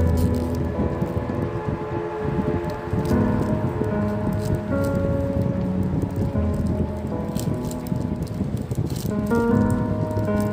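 Background music with steady melodic notes, over the crinkling and crackling of a plastic snack wrapper being torn and peeled open by hand.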